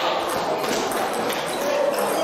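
Table tennis ball clicking off bats and bouncing on the table in a serve and the first shots of a rally, with voices in the hall behind.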